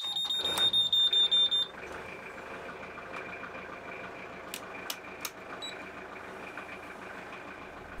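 A boat engine panel's warning buzzer beeps loudly and rapidly as the ignition key is turned, then cuts off after about a second and a half. After that the boat's inboard engine runs steadily and more quietly, with a few sharp clicks about halfway through.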